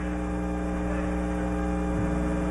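Steady electrical mains hum: a constant low buzz made of several fixed tones, with no change through the pause.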